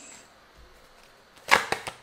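A quiet moment, then about one and a half seconds in a quick run of sharp snapping clicks as a deck of tarot cards is handled and shuffled.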